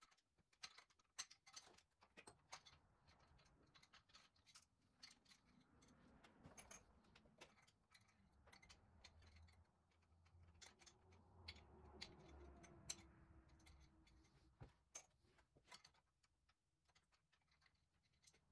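Faint, irregular metallic clicks and ticks of a pick prying the head-bolt washers out of a Volvo D24 diesel's cylinder head, one bolt hole after another.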